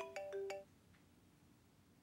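Mobile phone ringtone playing a quick melody of short notes, which stops about half a second in as the call is answered; near silence follows.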